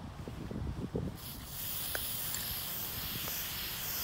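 Aerosol spray-paint can spraying: a steady hiss that starts abruptly about a second in and keeps going.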